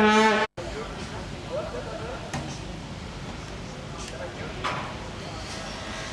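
Amplified announcer's voice holding the end of a word, cut off abruptly about half a second in. After that comes steady outdoor city ambience: a low hum of distant traffic and faint far-off voices.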